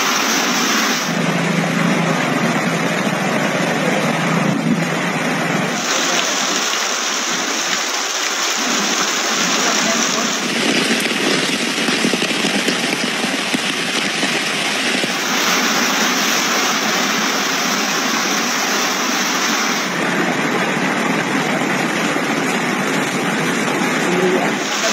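Loud, steady storm noise of typhoon wind, rain and fast-flowing floodwater on phone microphones. Its character changes every five seconds or so as different recordings follow one another.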